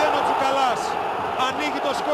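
Stadium crowd cheering and shouting as a goal goes in, with several loud individual voices standing out over the roar.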